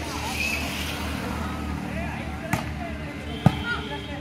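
A volleyball struck by hand twice, about a second apart, with the second hit the louder one. Voices from the players and spectators carry on underneath.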